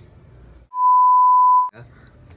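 A censor bleep edited into the soundtrack: one steady, high, pure beep lasting about a second, starting just under a second in, with all other sound muted while it plays.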